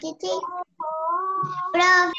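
A young child singing over a video call: a few short syllables, then a long held note, loudest near the end.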